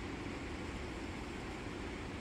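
Steady outdoor background noise: an even, low rushing hiss with no distinct footsteps, knocks or calls.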